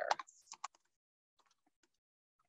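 Faint clicking of computer keyboard keys: a few scattered keystrokes, sharper ones early on and fainter ones later.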